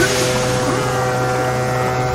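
Cartoon sound effect of a robot boat letting out a smoke screen: a steady, noisy whoosh that starts suddenly and holds level, with steady tones under it.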